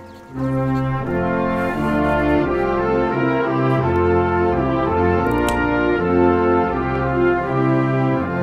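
Trailer score of orchestral brass, horns and trombones playing slow, held chords that change every second or so. It starts again after a brief drop in level at the very start.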